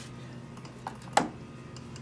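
Faint steady hum from a homemade magnet-and-coil wheel generator turning, with two sharp metallic clicks a little after a second in, the second much louder.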